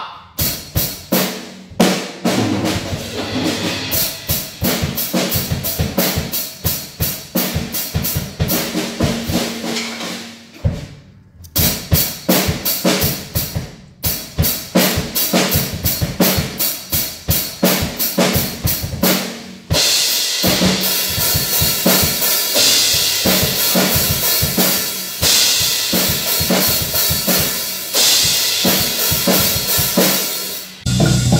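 Drum kit played hard: fast, dense drum hits with a brief pause about a third of the way in. In the last third, cymbals ring continuously over the beat.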